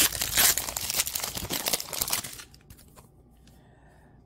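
Baseball card pack's wrapper being torn open and crinkled: a dense crackling rustle for about two seconds, then it stops and goes quiet.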